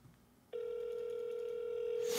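A single steady electronic tone, with a slight waver, starts about half a second in and holds.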